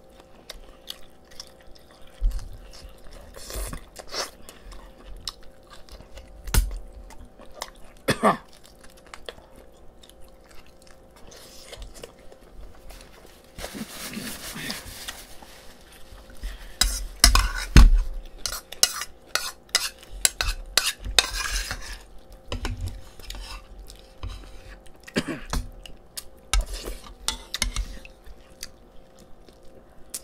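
Eating at a table: spoons and cutlery clinking against ceramic bowls, with chewing and scattered clicks and knocks. A denser run of clicks and dull thumps just past halfway is the loudest part.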